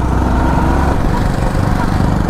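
Motorcycle engine running steadily under way, heard from the rider's seat with a heavy low rumble.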